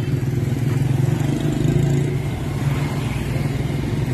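A motor vehicle's engine running steadily close by, a low, even engine hum that swells a little around the middle.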